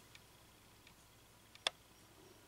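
A quiet room with a few faint ticks and one short, sharp click about one and a half seconds in.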